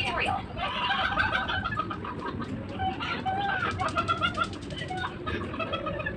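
A bird calling repeatedly, in short bursts of a second or less.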